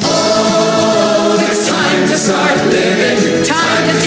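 Many voices singing a sing-along chorus together over a show-tune accompaniment.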